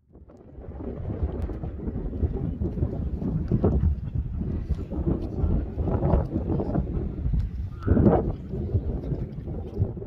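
Wind buffeting the microphone: an uneven, gusting rumble.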